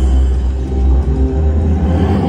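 Deep rumbling sound effect from a Huff N' More Puff slot machine, starting suddenly over the game's music as the wolf winds up to huff and puff at the houses.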